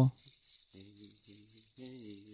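Soft background music: a steady shaker-like rattle with a few low, quietly sung notes held at one pitch.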